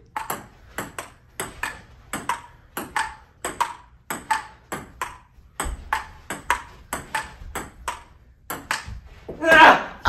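Table tennis rally: a plastic ping-pong ball clicks off the paddles and the table in quick alternation, about four clicks a second, until the rally stops about nine seconds in. A voice breaks in near the end.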